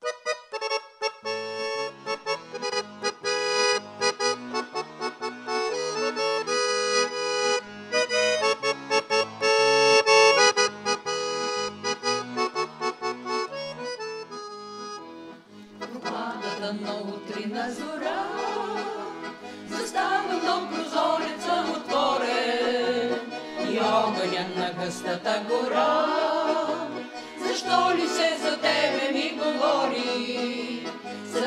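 A piano accordion plays a solo introduction with a steady alternating bass. About halfway through, a mixed vocal group of women and men comes in singing a Bulgarian song in harmony, with the accordion accompanying them.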